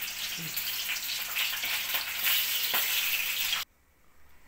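Corn kernels deep-frying in hot oil in a kadai: a steady sizzle with scattered crackling pops. It cuts off suddenly near the end.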